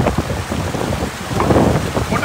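Loud rushing of a shallow mountain stream over rocks, a steady dense water noise with irregular surges.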